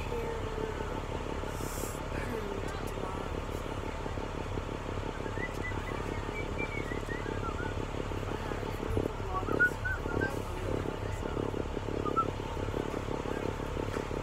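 School bus diesel engine idling with a steady low rumble, and faint voices or singing over it in the second half.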